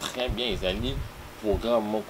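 A man speaking, in a slightly buzzy voice.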